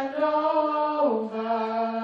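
A woman singing into a handheld microphone: one long held note that steps down to a lower held note about a second in.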